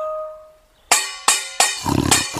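A cartoon metal pot struck four times in quick succession, each hit clanging with a short metallic ring. Before the hits, a ringing tone fades away.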